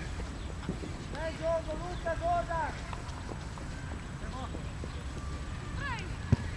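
Several shouted calls from voices on a football pitch, a run of them about a second in and shorter ones later, over a steady low rumble of wind on the microphone.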